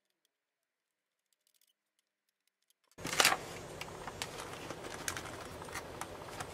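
Silent for about the first half, then, about three seconds in, a knock followed by low room noise with scattered small clicks and rustles from hands handling things close to the microphone.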